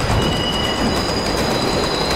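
Elevated subway train passing overhead on a steel structure: a low rumble with high, steady wheel squeal, one extra squeal tone sounding briefly in the first second.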